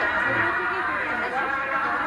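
Mixed voices with background music, one voice wavering in pitch.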